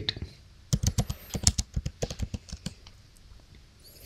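Typing on a computer keyboard: a quick run of about a dozen keystrokes over roughly two seconds, then it stops.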